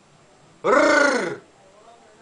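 A man's voice giving one drawn-out wordless syllable, a little under a second long, that rises and then falls in pitch, breathy and grunt-like, as a syllable of a recited sound poem.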